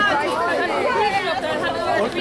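Several people talking at once: overlapping chatter of voices.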